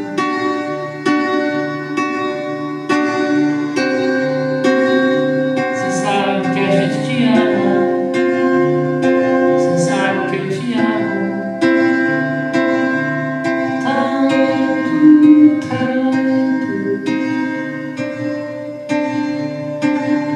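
A man singing to his own strummed classical guitar, the chords struck roughly once a second.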